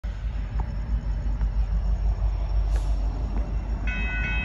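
Low, uneven rumbling background noise; near the end a railroad crossing's warning bell starts ringing in a quick, evenly repeating pattern.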